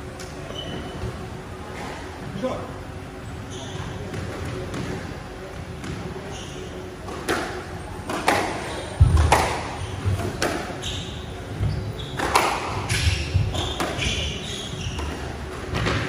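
Squash rally: the ball smacking off rackets and walls, the hits starting about halfway through and coming every half second to a second, some with heavy thuds. The strokes carry a hall echo, with short squeaks of shoes on the court floor.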